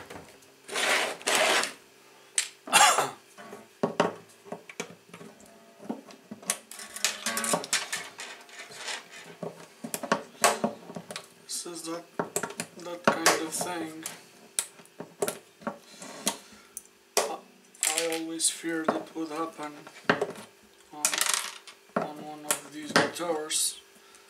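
Steel strings being taken off an Aria acoustic guitar: the bridge pins are pried out with pliers, giving repeated clicks, knocks and metallic rattles from the slack strings.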